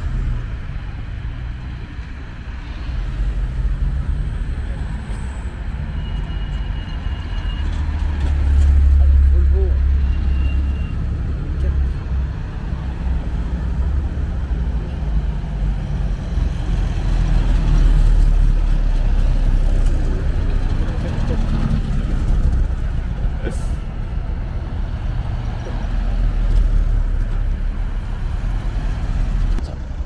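Road traffic on a bridge: cars and old military jeeps driving past one after another, engine and tyre noise rising and falling as each goes by, loudest about nine seconds in and again around eighteen seconds.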